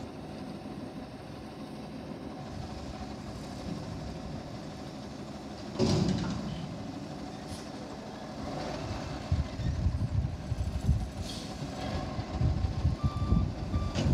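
Autocar front-loader garbage truck running as it moves up to the dumpsters, with a sudden loud burst of noise about six seconds in. Its reversing beeper starts sounding near the end.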